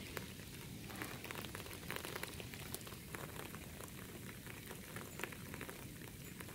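Faint, steady patter of light rain: many small irregular ticks over a low hiss.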